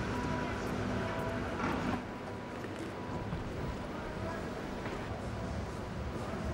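Steady noise of a large hall, with indistinct voices.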